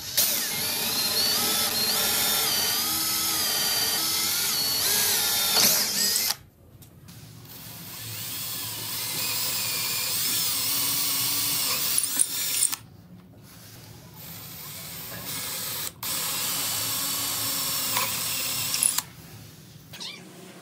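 Cordless drill with a twist bit boring into the end of a bent hardwood strip clamped to a wooden block, its motor whine wavering as the bit cuts. It runs in three bursts, stopping about six seconds in and again near thirteen seconds, with a quieter stretch before the last loud run.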